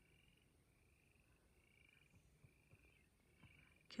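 Frogs croaking faintly: short high trilled calls repeated evenly, a little more than one a second.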